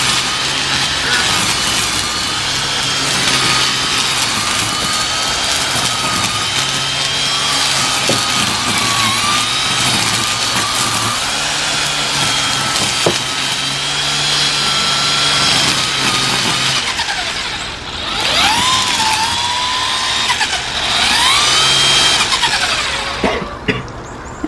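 Cordless string trimmer's electric motor whining steadily as it cuts weeds, its pitch wavering a little with the load, with a few sharp ticks from the line striking something. Near the end it slows and speeds back up twice.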